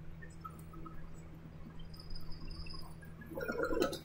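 Quiet room tone with a steady low hum and a few faint small sounds; a faint voice comes in near the end.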